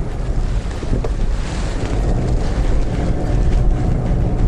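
Steady low rumble of engine and road noise inside the cabin of a Subaru Impreza Sport while it drives.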